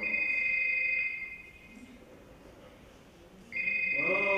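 Telephone ringing with an electronic two-tone ring: one steady ring about a second and a half long, then a second ring starting about three and a half seconds in.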